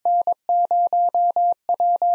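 Morse code at 22 words per minute: a single steady beep of about 700 Hz keyed on and off in short dots and long dashes, sending the start of an amateur radio callsign (N, 0, W).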